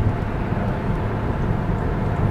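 Steady low rumble of a car driven at freeway speed, heard inside the cabin: tyre and engine noise running evenly.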